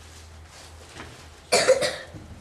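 A person coughs once, a short sharp cough about one and a half seconds in; before it there is only faint room sound.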